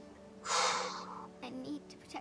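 A person's short audible breath, a gasp or sigh about half a second in, followed by faint quiet speech.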